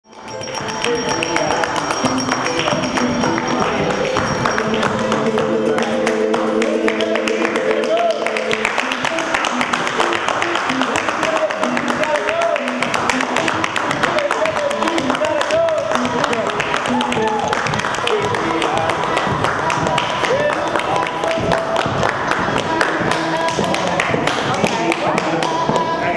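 Music with a busy percussive beat, held chords through the first several seconds, and a voice over it.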